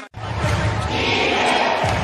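Basketball arena sound: a steady crowd din with the knocks of a basketball being dribbled on the hardwood court. It starts abruptly after a brief dropout at an edit cut.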